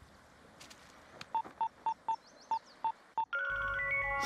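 Mobile phone keypad tones as a number is dialled: about seven short electronic beeps at one pitch, roughly three a second. Music starts just before the end.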